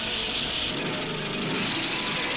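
An orchestra playing together with machine noise: a loud hiss that cuts off suddenly under a second in, then a low motor-like drone, as in a concerto written for orchestra and machines.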